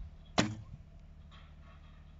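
A heavy-draw-weight bow shot: one sharp, loud snap of the string on release about half a second in, followed by a brief low twang.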